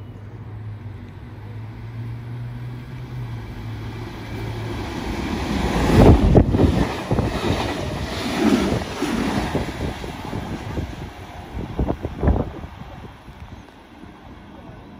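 A stainless-steel double-deck electric train passes close by at speed. Its rush builds to a peak about six seconds in, then continues as rumbling wheels with a few sharp knocks near the end before fading away.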